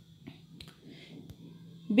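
Pause in speech: low background noise with a faint steady hum and a few faint, short clicks.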